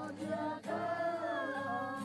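Several voices singing together in a slow, sustained melody, accompanied by an acoustic guitar, with a brief break between phrases about half a second in.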